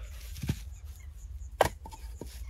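Fired clay bricks knocking against one another as they are set into a stack: two knocks about a second apart, the second louder, followed by a couple of small clicks.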